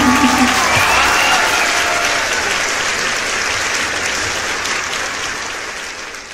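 The band's closing chord dies away about a second in, and an audience applauds, the applause fading out near the end.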